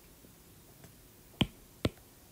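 Two short, sharp clicks about half a second apart, over quiet room tone.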